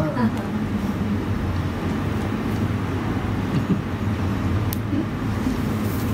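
Steady low background rumble with no clear speech, and one brief faint click about three quarters of the way through.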